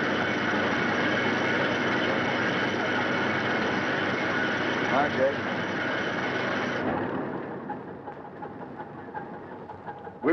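Shipboard machinery running steadily as a shark is hoisted aboard a fishing boat. The sound drops away abruptly about seven seconds in, leaving a fainter hum. A brief short cry comes about five seconds in.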